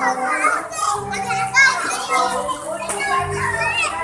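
Several children's voices calling and chattering as they play in a swimming pool, with water splashing.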